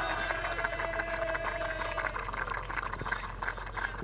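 Audience applause that thins out to scattered separate claps, with a faint held tone, likely music or a PA, that ends about two seconds in.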